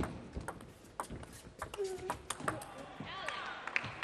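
Table tennis rally: the plastic ball clicks sharply off the rubber bats and the table at a quick, uneven pace. There are short voices in the hall about two seconds in and again near the end.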